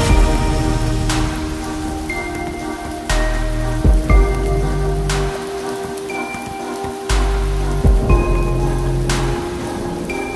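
Rain falling steadily, under slow music of sustained chords whose deep bass note changes every second or two, with a struck note marking several of the changes.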